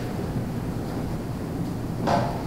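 A steady low rumbling noise with a fainter hiss above it and no distinct events.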